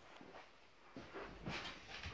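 Faint footsteps and shuffling as a person walks up and sits down on a padded piano bench: a few soft thumps and rustles.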